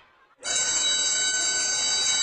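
Electric school bell ringing steadily, starting about half a second in: the bell announcing recess.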